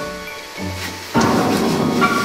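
Soundtrack music of held notes; a little over a second in, a sudden loud noisy crash comes in over it and carries on.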